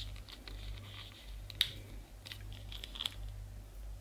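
Small hard plastic toy pieces being handled and clicked together as a blanket-shaped shell is hooked shut around a small articulated figurine: light handling noise with a few sharp clicks, the loudest about one and a half seconds in.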